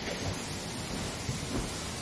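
Steady background hiss of room noise, with no distinct events standing out.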